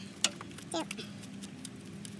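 A few sharp metallic clicks and taps of a wrench working a 10 mm ignition coil bolt loose on the engine's valve cover, the loudest click about a quarter second in.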